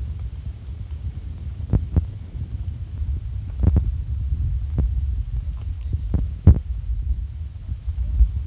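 Low rumble of a car driving slowly over a rough, rutted dirt road, heard from inside the cabin. Several sharp knocks and rattles come as the wheels drop into ruts; the loudest is about six and a half seconds in.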